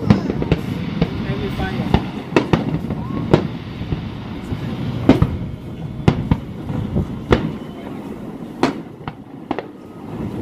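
Aerial fireworks exploding: more than a dozen sharp bangs at uneven intervals, some louder than others, over a steady low rumble.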